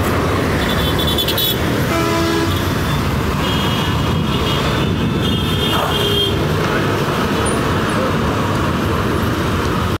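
Diesel engine of a large coach bus running close by in steady street traffic noise, with short horn toots about two seconds in and again a few seconds later.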